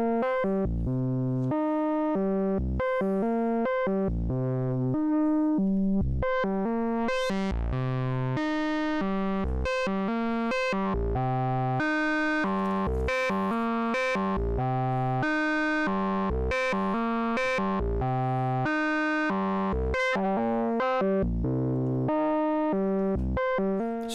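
A buzzy, harmonic-rich synthesizer voice playing a sequence of short low notes, about two a second, that change in pitch. It runs through a Three Tom Modular Steve's MS-22, an MS-20-style filter, with the resonance turned up and the cutoff modulated by the oscillator's own signal, so the brightness and the ringing overtones shift from note to note.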